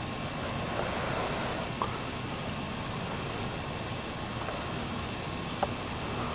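Steady outdoor background noise, an even hiss, with a faint click about two seconds in and another near the end.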